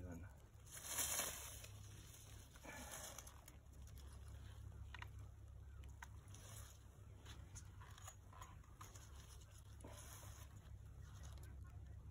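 Dry leaves rustling and crunching in short bursts, the loudest about a second in, as a red-shouldered hawk caught in a rat snake's coils struggles on leaf-covered ground, over a low steady rumble.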